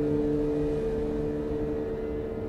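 Low sustained drone from the background score: a few steady held notes over a low rumble, easing slightly toward the end.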